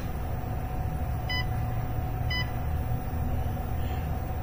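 Two short, high electronic beeps, about a second apart, from a SolarMax Orion 6 kW inverter's touch-button panel as its button is pressed to step through battery-type settings, over a steady low hum.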